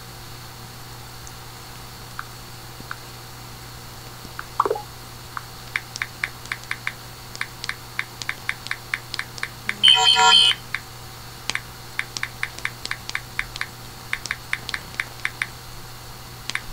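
Typing on a computer keyboard: quick runs of key clicks, several a second, starting about five seconds in, over a steady low hum. About halfway through, one brief, louder tone with many overtones sounds for under a second.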